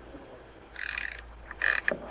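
A small socket ratchet clicking in two short rapid runs, about a second in and again near the end, as it turns in one of the fasteners that hold a stator inside a motorcycle engine side case.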